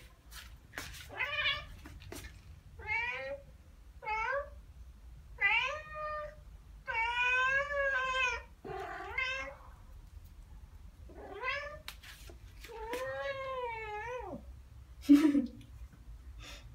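Ragdoll cat making a string of short chirping meows, about eight calls with two longer drawn-out ones among them. These are the calls a cat makes at birds it is watching. A sharp knock sounds near the end.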